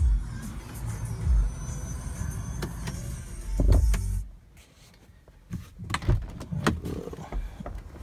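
Handling thumps and knocks inside a car cabin as someone moves from the back seat to the driver's seat. A steady low hum stops suddenly about four seconds in, and scattered clicks and knocks follow.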